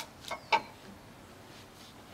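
Two short clicks close together about half a second in, the second one sharp and loud, then quiet: hard plastic mower parts being handled as the recoil starter comes off.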